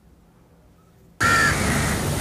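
About a second of near silence, then loud outdoor noise that starts abruptly, opening with a short harsh bird call.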